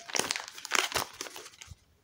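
A plastic food pouch crinkling as it is handled and turned over in the hand, stopping after about a second and a half.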